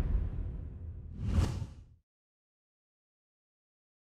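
Whoosh sound effects of an animated title sting over a deep rumble: one long whoosh fading out, then a second short swoosh about a second and a half in. The sound cuts off abruptly about two seconds in, leaving dead silence.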